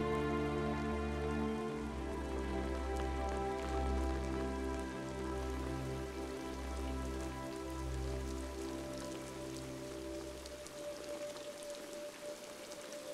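Steady heavy rain with pattering drops, under the film score's sustained low chords, which swell slowly and change note every second or two, then fade out near the end, leaving only the rain.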